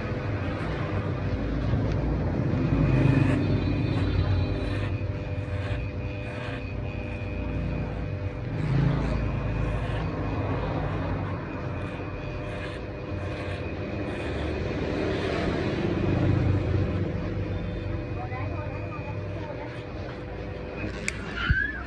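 Electric hair clippers running with a steady hum while trimming short hair over a comb.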